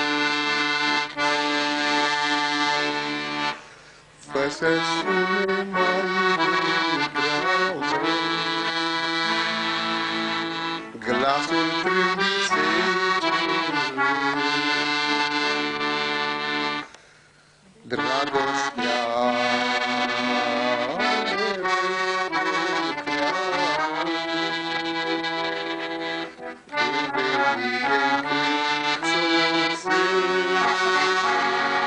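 Accordion playing a melody over held chords, breaking off briefly twice, about four seconds in and again around seventeen seconds in.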